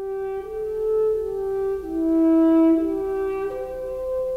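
Orchestral film music: a solo French horn playing a slow melody of long held notes, about one new note every second.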